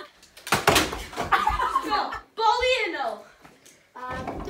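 A thump as a small rubber ball strikes the door-mounted mini basketball hoop and door, followed by excited voices.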